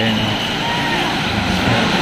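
Small waves breaking and washing in over shallow water, a steady rushing noise, with faint voices in the background.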